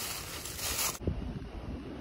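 Wind buffeting the microphone with a rustling hiss. About a second in, the sound changes abruptly to a duller, low wind rumble.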